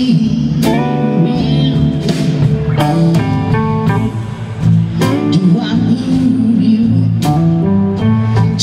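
Live blues band playing: electric guitar lines over electric bass, drums and keyboard, with drum hits at a steady beat.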